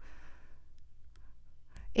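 A woman's soft breath out in the pause between phrases, followed by a few faint clicks over a low steady hum.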